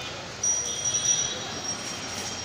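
Pigeon seed mix poured from a plastic scoop into a plastic bowl, a grainy rush that starts about half a second in. A steady high-pitched whine runs over it.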